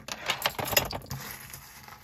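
Metal costume jewelry clinking and rattling as pieces are handled, with a quick run of small clicks in the first second.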